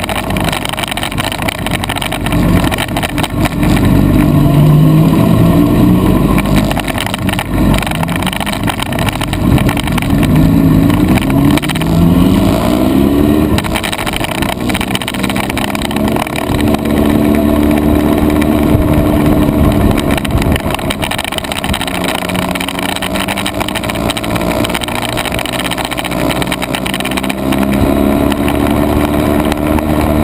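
Honda CBR sport bike's inline-four engine, heard from on board, pulling away gently several times with its pitch rising and then easing, holding steady in between, over a rush of wind and road noise.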